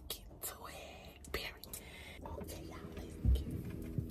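Faint rustling movement sounds with a single dull, low thump a little past three seconds in.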